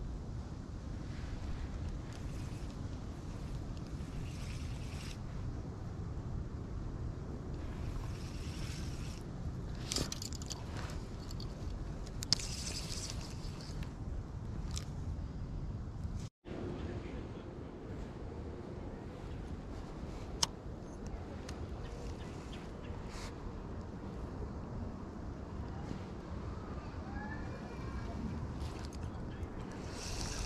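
Wind rumbling on the microphone, with a few sharp clicks and brief rustles of a spinning rod and reel being handled. The sound breaks off for a moment about halfway through.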